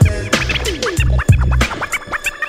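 Hip hop beat with turntable scratching cut over it: quick rising and falling squiggles of sound, several a second, over a steady kick drum.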